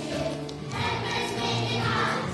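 A group of young children singing together in unison, with musical accompaniment underneath.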